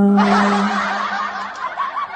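A man singing a cappella into a handheld microphone holds one low note that ends within the first second. A breathy laugh comes in over it and runs on until near the end.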